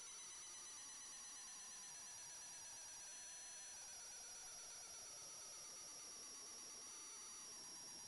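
Near silence: only a faint, steady high-pitched whine over low hiss.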